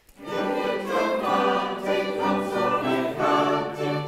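Mixed choir singing a madrigal with string accompaniment, held chords moving every half second or so; the music cuts in just after the start.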